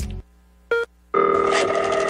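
Music cuts off, a short electronic beep sounds, and then a telephone rings for about a second.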